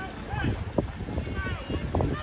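Wind buffeting the microphone with a low rumble, and a few short spectator calls and voices.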